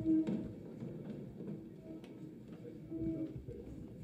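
A group of people getting up from their chairs around a conference table: chairs shifting, small knocks and clothes rustling, with a brief squeak-like tone near the start and another about three seconds in.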